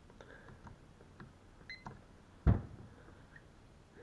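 Switching on a Garmin echoMAP 73sv fish finder by hand: a few faint clicks of handling, a brief faint high beep a little before the middle, and one sharp knock about halfway through.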